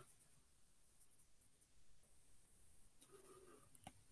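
Near silence: room tone, with a faint tap near the end.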